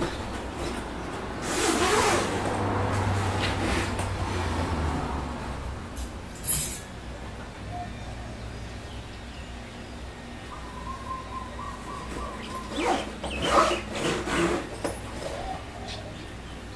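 A vehicle passes: a low hum that swells about a second and a half in and fades away over the next few seconds. A sharp click follows, and near the end there are a few short chirpy sounds.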